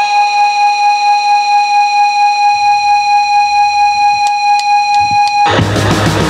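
Hardcore punk electric guitar holding one sustained, distorted note as feedback, its loudness wavering about four times a second, with a low bass note under it for a stretch. Four sharp drumstick clicks count in, and the full band crashes in with distorted guitar, bass and drums about half a second before the end.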